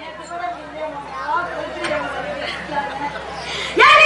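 Indistinct talking and chatter of several voices during a pause in the stage music. Near the end the music comes back in with a loud held note.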